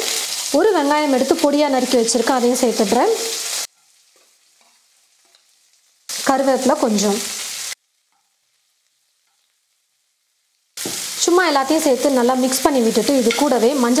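A spatula stirring chopped onions, green chillies and curry leaves in sizzling oil in a kadai, scraping against the pan as it sautés them. The sound breaks off about three and a half seconds in, returns briefly near six seconds, cuts out completely for about three seconds, and resumes about eleven seconds in.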